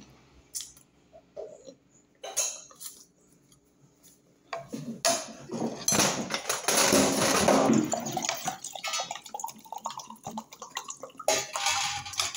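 Tableware being handled on a tabletop: a few scattered clinks at first, then a busy stretch of clinking and clattering from about halfway in, loudest for a couple of seconds, before thinning out.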